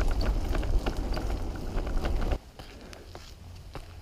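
Wind buffeting the microphone of a camera riding on a moving bicycle, with the rattle and knocks of the bike rolling along a path. About two and a half seconds in, the rumble cuts off abruptly and only a quieter hiss with a few clicks remains.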